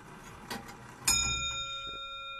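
A single bell-like chime struck about a second in, its several tones ringing on steadily. Before it there is a soft noisy stretch with one click.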